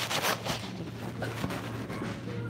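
Rustling and brushing as the phone passes close against a quilted puffer jacket, loudest in the first half-second, then lighter scuffs, over a steady low hum.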